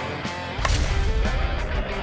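One sharp crack of an Easton slowpitch softball bat hitting the ball, about two-thirds of a second in, over background rock music.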